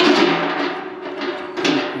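Perforated steel grate of a pan stove scraping and rattling against the inside of the steel bowl as it is lowered back in on a poker hook, the bowl ringing, with a sharp clank a little past halfway as the grate seats.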